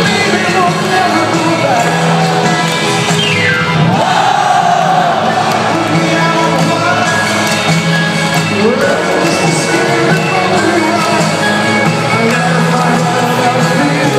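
Rock band playing live through a stadium PA, heard from far back in the audience, with the crowd's cheering and shouting mixed in.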